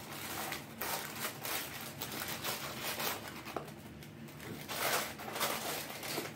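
Paper fast-food wrappers and a paper fries bag rustling and crinkling as they are handled and opened, in a run of short rustles.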